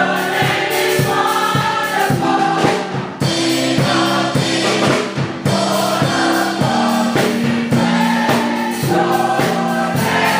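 Gospel choir singing in harmony, accompanied by a drum kit and keyboard keeping a steady beat.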